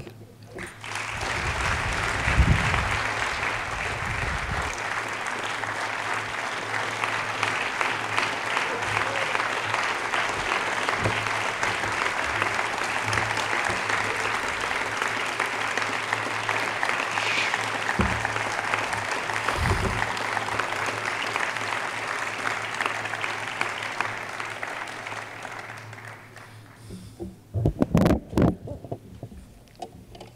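A large audience applauding steadily for an introduced speaker, starting about a second in and dying away over the last few seconds.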